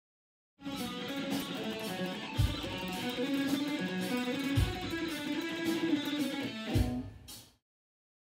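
Electric guitar playing fast runs of single notes, with three deep low hits about two seconds apart. It starts suddenly and stops shortly before the end.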